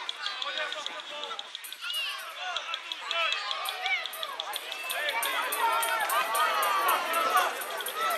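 Many overlapping voices calling and shouting at once, children and spectators at a football pitch, getting louder about halfway through.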